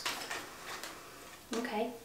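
Tarot cards handled in the hands: a brief rustle of cards that fades in the first half second, as a card is readied to be drawn from the deck. A woman then says "okay" near the end.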